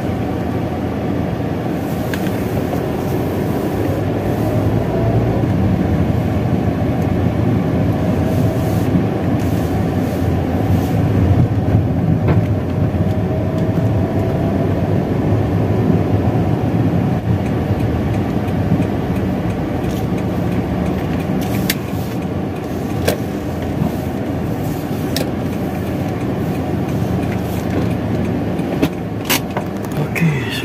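A car driving slowly, with a steady low engine and road noise heard from inside the cabin. A few sharp clicks come in the last third.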